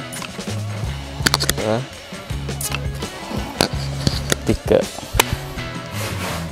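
Underlever pump of a Sharp Fusion 2565 multi-pump pneumatic air rifle being worked by hand to charge it: lever strokes with sharp clacks, a few in all, over steady background music.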